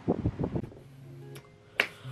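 Background music with held notes comes in quietly, and a single sharp hand clap sounds near the end.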